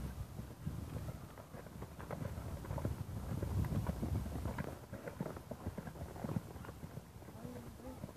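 Hoofbeats of a horse cantering on a sand arena, a run of soft repeated strikes that grows louder toward the middle and then eases off.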